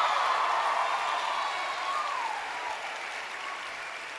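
Large audience applauding with some cheering voices, loudest at first and dying down gradually.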